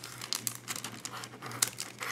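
Packaging crinkling and rustling in irregular small crackles as a planner accessory is being taken out of it.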